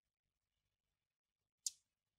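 Near silence: room tone, broken by a single short, sharp click near the end.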